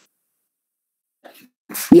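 Dead silence on the lecturer's call microphone, then a faint brief noise and a short sharp breath-like burst just before his voice starts near the end.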